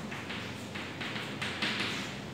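Chalk tapping on a blackboard while writing, a quick series of short taps.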